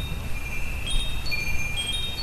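Wind chimes ringing: several high, clear tones struck one after another and ringing on over a low rumble.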